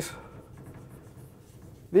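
Chalk scratching on a blackboard as a small figure is drawn, a faint rubbing scrape broken by light taps.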